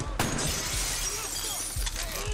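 A sharp crack, then glass shattering, with shards tinkling and raining down for well over a second.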